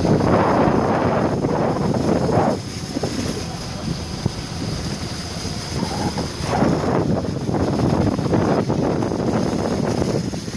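Wind rushing on the microphone over the road noise of a vehicle driving slowly on a wet dirt road. The rushing eases about two and a half seconds in and rises again around six and a half seconds.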